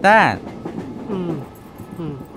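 A voice calling out a short syllable whose pitch falls, followed by quieter speech over a low, steady background.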